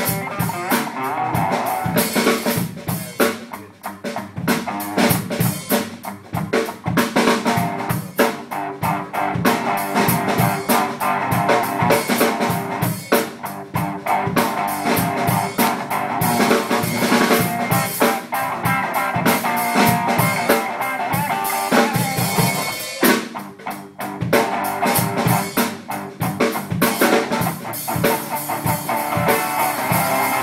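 A live rock duo of guitar and drum kit playing, with the guitar sustaining notes over a steady beat of drum hits. The playing drops away briefly twice, about four seconds in and again near the end.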